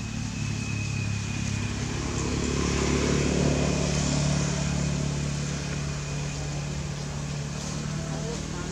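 A motor engine drones steadily, growing louder about three to four seconds in and then easing off, like a vehicle passing nearby.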